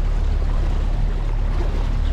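Outboard motor of a flats skiff running steadily at slow speed, a low rumble with the sound of the hull moving through the water.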